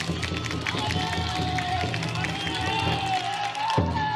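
Chanting and singing from the bearers of a taikodai (futon-daiko) festival float, with one voice holding a long, wavering note, over a steady low hum and scattered sharp clicks.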